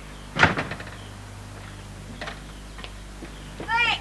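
A front door slammed shut: one loud bang just under half a second in. Near the end comes a short, high squeal that rises and falls in pitch.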